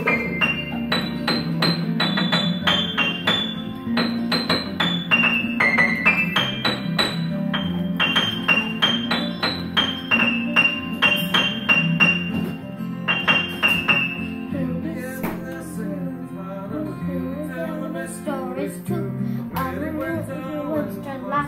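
Upright piano played by a young child: a steady run of struck treble notes over held lower notes. A child's singing voice comes in about three-quarters of the way through, with the piano continuing underneath.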